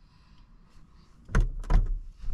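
A few sharp knocks and rustles close to the microphone from a hand moving about one and a half seconds in, after a quiet stretch of car-cabin hush.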